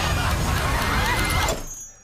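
A loud, chaotic din of noise with overlapping wavering voices, which cuts off suddenly about one and a half seconds in and drops to near quiet.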